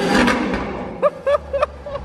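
Ferrari F12berlinetta's V12 engine blipped at the start, its exhaust note fading back to a low idle. Three short vocal cries come over it about a second in.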